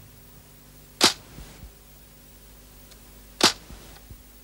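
Title-sequence sound effect: two short, sharp swishing cracks, one about a second in and one near the end, each followed by a couple of faint clicks, over a faint low hum.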